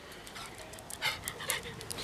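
A small dog panting faintly, with a few short breaths in the second half.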